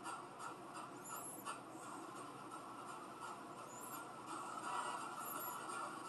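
Faint steady hiss of room noise with scattered soft ticks, and brief faint high chirps a little after one second and again near four seconds.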